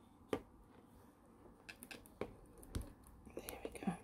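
Faint handling noise of thin jewellery wire being bent and crossed over by hand: scattered small clicks and ticks, with one sharper click just after the start.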